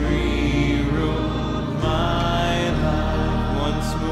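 Slow worship music with long sustained organ chords over a steady bass, the chords changing twice.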